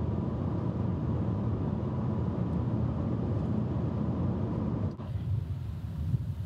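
Steady low road rumble of a car driving along a highway. About five seconds in it cuts off to a quieter, even hiss.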